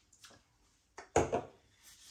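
A beer glass and aluminium drinks can being handled, with a brief loud knock about a second in and small faint handling sounds around it.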